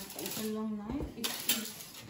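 A brief murmured voice, then a couple of sharp metal clicks and clinks from a metal cake knife being handled and set down.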